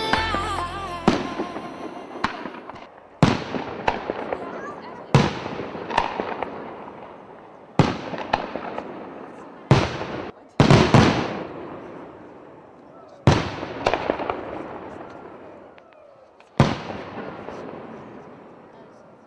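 Aerial fireworks shells bursting: about a dozen sharp bangs at uneven intervals of roughly one to three seconds, each dying away in a fading tail. The loudest come close together about ten to eleven seconds in. A song ends just as the bangs begin.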